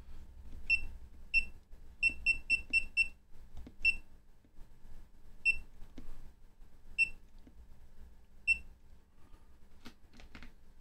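Key-press beeps from a FNIRSI LC1020E handheld LCR meter, each one confirming a button press while its settings are changed. There are about eleven short high beeps: single ones, then a quick run of five around two to three seconds in, then more widely spaced ones.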